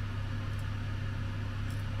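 Steady low hum with a faint even hiss, unchanging throughout: the background room tone of the workshop, with no distinct event in it.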